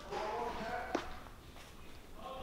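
A faint voice in the background during the first second, then a single sharp tap about a second in.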